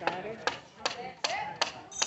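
A run of about five sharp taps or knocks, roughly two to three a second, with faint voices around them.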